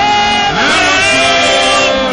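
Live church praise-and-worship music: a woman singing through a microphone and PA, holding long notes over the accompaniment.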